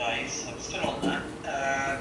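Indistinct speech in short bursts, not clear enough to be made out as words, most likely from the video of a man playing on the projection screen.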